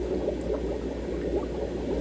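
Aquarium water bubbling and gurgling steadily, as from the tank's aeration, with a constant low hum underneath.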